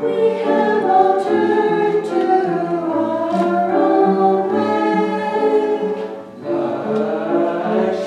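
Mixed church choir of men and women singing, holding long notes, with a short break between phrases a little past six seconds in.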